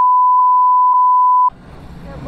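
Censor bleep: a single steady high-pitched beep that replaces the speech, with all other sound muted under it, cutting off about one and a half seconds in.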